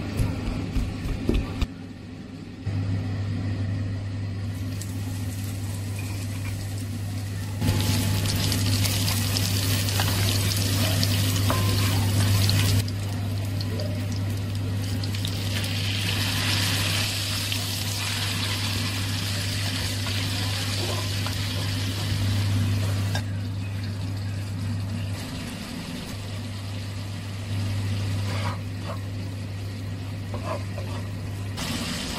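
A stone mortar and pestle knocks a few times at the start, pounding spices. Then a ground shallot, garlic and ginger paste sizzles in oil in a pan, and later a liquid bubbles in the pot, over a steady low hum.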